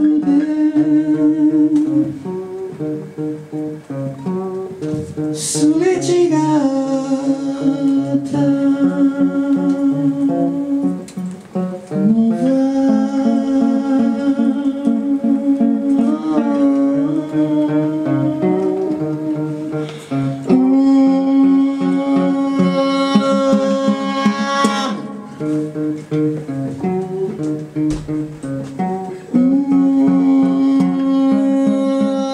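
Live acoustic guitar music: a guitar strummed while a voice sings long, held notes over it, with a few quieter passages.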